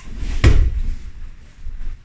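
A heavy thump of a body being pushed down onto foam puzzle mats in a jiu-jitsu back take, about half a second in, followed by a softer thud near the end as the grapplers settle.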